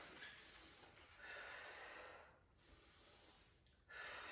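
Near silence with a few faint breaths, one swelling about a second in and another near the end.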